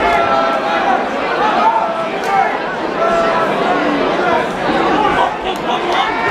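Crowd of spectators shouting and talking over one another, a steady mass of voices in a large hall.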